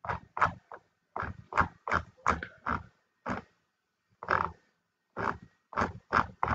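A person's voice in short, quiet mutters or grunts, several a second, each cut off sharply with silence between.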